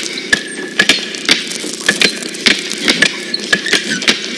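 Wooden handloom at work: sharp wooden clacks about three times a second, a little irregular, over a continuous rattle of the frame.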